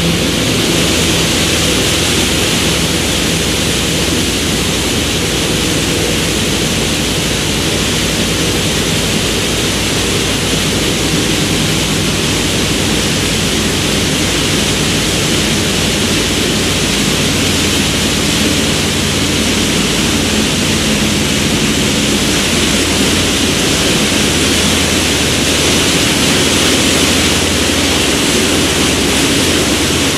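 A Sea Ray Sundancer cruiser running at speed: the steady drone of its MerCruiser 7.4 inboard engine under the loud rushing and churning of the wake water at the stern.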